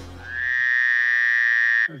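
Fart sound effect: one steady buzzy tone that rises slightly at first, holds for about a second and a half, and cuts off suddenly near the end.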